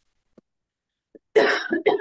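A woman coughing, a short run of two or three quick coughs starting about a second and a half in.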